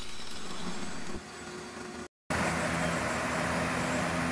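Angle grinder with a diamond wheel grinding the fiberglass of a boat stringer, a rough rasp that drops off about a second in. After a short break, a steady machine hum with a low drone.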